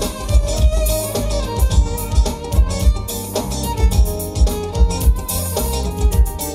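Live band music: electric guitar and bağlama playing over a drum kit keeping a steady beat.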